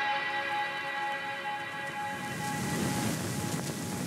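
The held notes of a music track fade away over the first two seconds. From about two and a half seconds in, a steady rushing noise takes over, the sound of an airliner cabin in cruise flight.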